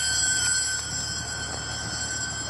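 Steady machinery noise aboard a ship: a low rumble and hiss under several high, steady whining tones. It starts abruptly.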